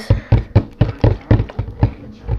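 Hands gripping and handling a partly filled plastic water bottle close to the microphone: a quick, uneven run of sharp plastic taps and crackles, about four a second.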